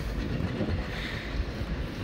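Steady low rumble and hiss of outdoor background noise, with no distinct events.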